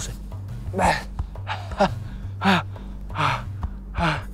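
A man's hard, gasping breaths, four or five of them about a second apart, over steady background music.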